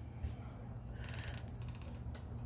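A quick run of small, rapid ticks lasting under a second from something being handled in a backpack, over a low steady rumble.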